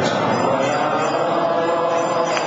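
Group devotional chanting (kirtan): many voices chanting together over music, steady and unbroken.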